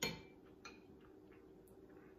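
A metal utensil clinking and scraping in a small glass bowl while scooping sauce: one sharp clink at the start, then a few faint ticks.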